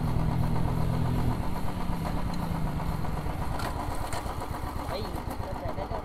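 Motorcycle engine running at low speed, its steady low note fading over the first few seconds as the bike slows to a near stop.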